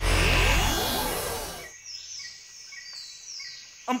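A sci-fi teleport sound effect: a sudden loud shimmering whoosh with a deep rumble that dies away over about a second and a half. It is followed by faint bird chirps.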